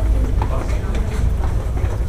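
People walking down a stairwell: footsteps and scattered voices over a steady low rumble.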